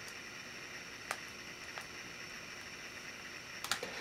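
A few faint, sharp clicks from small plastic parts as a micro SD card is pushed into the slot on the back of a Nook e-reader: one about a second in, a lighter one shortly after, and a quick cluster near the end, over faint room hiss.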